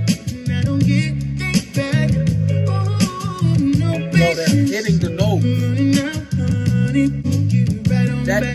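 Live R&B band music: a male singer over bass, guitar and drums.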